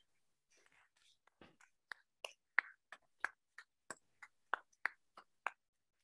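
Faint, sparse hand clapping, a few people or one, about three claps a second, starting about a second and a half in.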